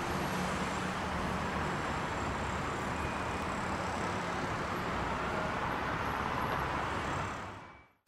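Steady hum of distant city traffic, with no distinct events, fading out near the end.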